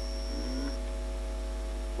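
Steady electrical mains hum, with a faint high whine that stops under a second in and a short low hesitation sound from a voice about half a second in.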